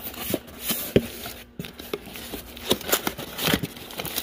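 Cardboard box being opened and handled on a metal workbench, with scattered rustles of cardboard and light knocks; the sharpest knock comes about a second in.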